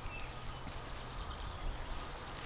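Faint, steady outdoor background noise in a garden with a low rumble and no distinct event.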